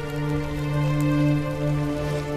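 Background score of sustained, held chord tones, over a soft steady hiss of ambience.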